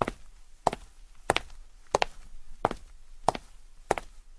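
Footsteps walking at a steady pace on a hard floor, about three steps every two seconds, each step a sharp double click of heel then toe.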